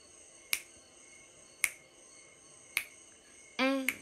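Finger snaps keeping a slow, even beat, three of them about a second apart, then a short sung note from a woman's voice near the end, with one more snap.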